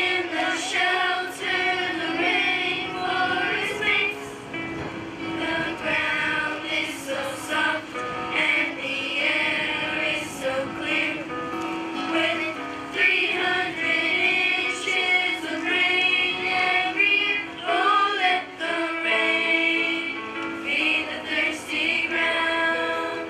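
Children's choir singing a song to music.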